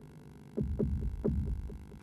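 Low heartbeat-like thuds in the soundtrack. They come in close pairs about one and a half times a second, starting about half a second in, over a steady low hum.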